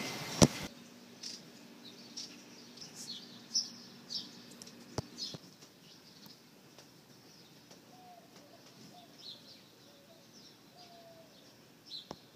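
Wild birds chirping: scattered short, high chirps throughout, with a few short, lower calls in the second half. A sharp click comes right at the start.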